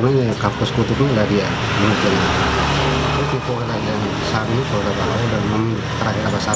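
A man speaking close to the microphone while a road vehicle passes in the background; its noise swells and fades over about two seconds in the middle, under the voice.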